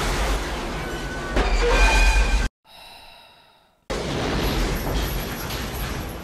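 Film soundtrack of a train smashing into a bus: loud crashing and grinding metal over a heavy rumble that swells about a second and a half in. About two and a half seconds in it cuts off abruptly to a faint, fading ring for about a second, then the loud rumble resumes.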